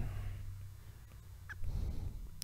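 Quiet room tone with a steady low hum as the last syllable of a spoken word fades out. Faint taps of a stylus on a tablet screen come near the end.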